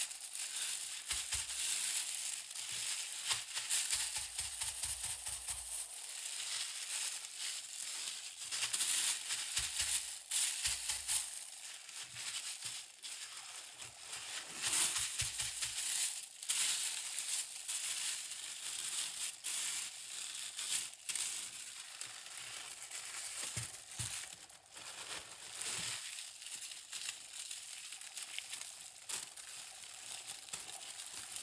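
Continuous crinkling and rustling as something is handled, full of small crackles, with a few dull low bumps.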